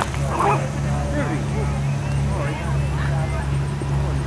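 Steady low hum throughout, with faint distant voices and short high-pitched calls, most of them in the first second.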